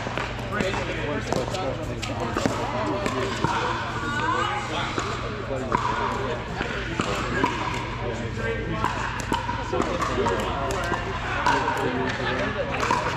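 Irregular sharp pops of pickleball paddles hitting plastic pickleballs, and balls bouncing on the court, from several games going at once in a large indoor hall, over a murmur of many voices and a steady low hum.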